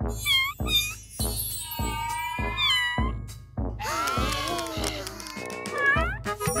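Children's song with a steady bouncy beat, over which a cartoon cat meows several times. A flurry of warbling, gliding sound effects comes about two-thirds of the way through.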